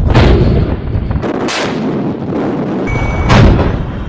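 Warship main deck gun firing at shore targets: three heavy shots, one at the start, one about a second and a half in and the loudest near the end, with the deep low sound of each shot carrying on between them.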